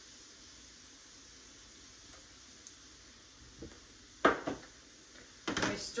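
Spice jars handled and put down on a kitchen counter: a few faint ticks, one sharp clack about four seconds in, and a short clatter near the end, over quiet room tone.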